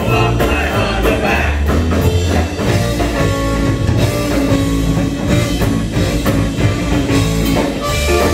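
Live rock-and-roll band playing an instrumental break with no vocals: electric guitar, electric bass and a drum kit keep a steady beat, with keyboard. A trumpet comes in partway through.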